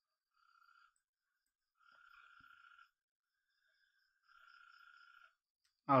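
Three faint buzzing calls, each lasting up to about a second, with one faint click between the second and third.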